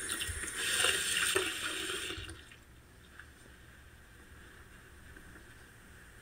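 Bathroom tap water running over a straight razor blade into the sink, shut off a little over two seconds in.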